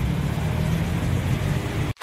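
Steady low engine rumble that cuts off abruptly near the end, with a brief short sound at the cut.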